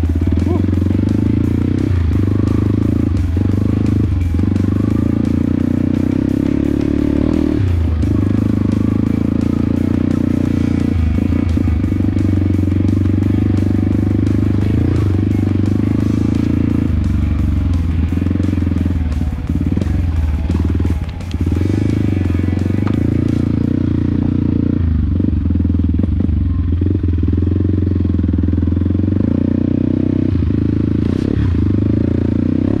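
Yamaha WR155R trail bike's single-cylinder four-stroke engine running on a dirt trail, its pitch rising and falling with the throttle, with music playing over it.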